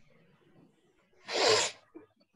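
A person sneezing once: a short, loud burst about a second and a half in.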